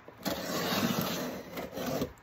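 Scraping, rubbing handling noise as things are moved about on a tabletop beside a cardboard shipping box. It starts shortly after the beginning and stops near the end.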